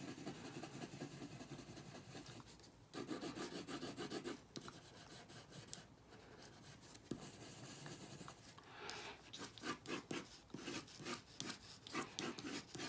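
Faint pencil scratching on paper as a musical note is drawn, turning into a run of quick, separate sketching strokes over the last few seconds.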